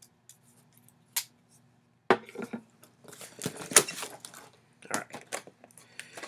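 Cardboard shipping box being opened by hand after its tape has been cut: a sharp click about a second in, then irregular bursts of cardboard scraping, rustling and light knocks.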